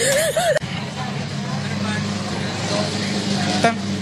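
A brief burst of laughing voice, then a steady low outdoor background hum, like distant road traffic, running at an even level.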